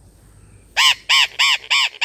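A bird calling: a rapid run of loud, harsh, caw-like calls, about three a second, starting just under a second in.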